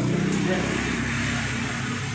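A motor vehicle engine running nearby: a low, steady hum that slowly fades.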